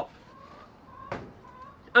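One sharp plastic click about a second in as a small air purifier is handled and opened, over faint wavering bird calls in the background.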